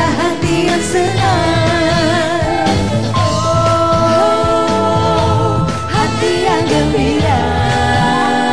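Female vocal duet singing a Ramadan pop song over instrumental backing, with a long held note in the middle.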